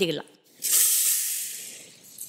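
Hot oil with fried onions poured from a pan onto a pot of wet khichda, hissing and sizzling as it hits the porridge. The sizzle starts suddenly about half a second in and dies away over a second and a half.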